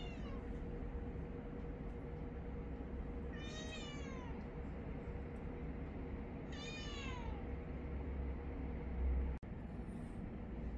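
A domestic cat meowing twice, about three seconds apart; each meow is a long call that slides down in pitch.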